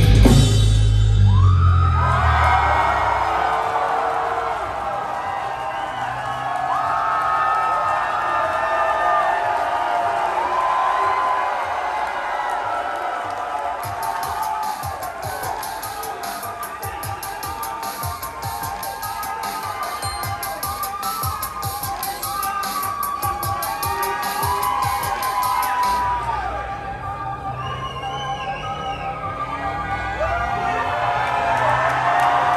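A heavy metal band's last chord dies away, then a large concert crowd cheers, whoops and shouts. Hand clapping joins in through the middle of the cheering and stops a few seconds before the end.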